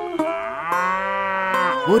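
A cow mooing once: a single long call that rises a little in pitch, then holds steady for over a second before ending.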